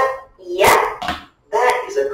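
Speech only: a voice talking in short phrases with brief pauses between them.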